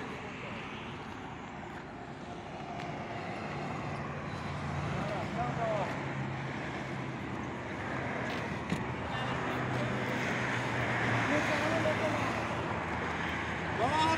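Steady road traffic noise, with a vehicle's low engine hum coming in about four seconds in and fading out around ten seconds. Faint voices are heard now and then.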